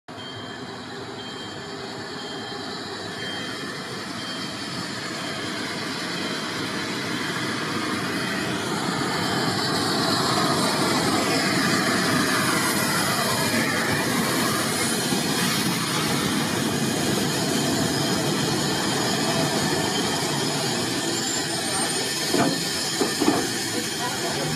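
Narrow-gauge steam locomotive 83-076 and its coaches running past close by, growing louder over the first ten seconds as the train nears, then staying loud as the coaches roll by. A few sharp clicks near the end.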